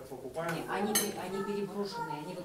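Cutlery and plates clinking at a laid dinner table, with one sharp clink about a second in, over faint background chatter.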